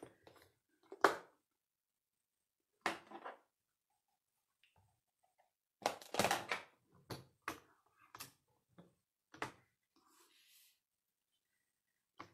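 Sharp clicks and knocks of small bar magnets being picked up and set down on a stamp-positioning tool's magnetic base while card stock is shifted into place. The loudest knock comes about a second in, with a cluster of quicker clacks around six seconds and a few more after.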